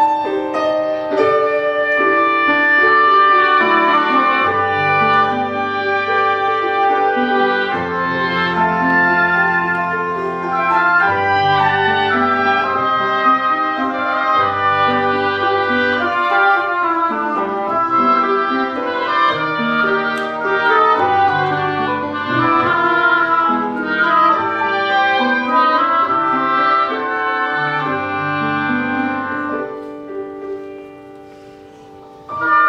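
Two oboes, an English horn and a piano playing a chamber piece together in layered, long-held reed notes over the piano, with a lower line coming in and out from about four seconds in.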